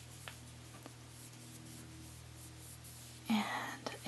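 Faint rubbing of fingertips working a touch of baby oil into the sanded surface of a baked polymer clay doll's leg, with a couple of soft clicks in the first second, over a quiet room with a steady low hum.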